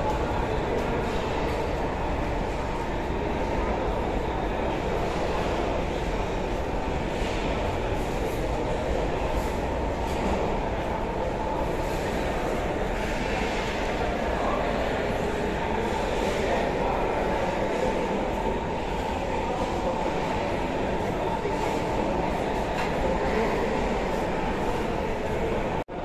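Steady mechanical noise, even in level and strongest in the low and middle range, with faint voices and occasional faint clicks over it.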